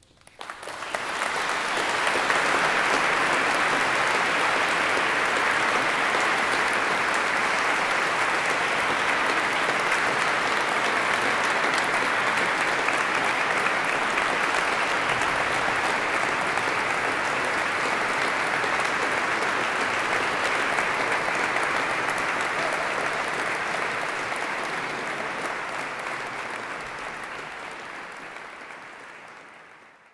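Audience applauding: dense, steady clapping that starts about half a second in and fades out over the last few seconds.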